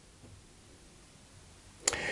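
Quiet room tone during a pause, broken near the end by a single sharp click just before speech resumes.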